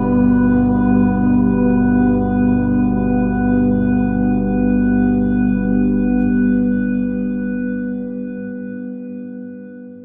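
Ambient sleep music: one long held chord of steady, slowly wavering tones, fading out over the last few seconds.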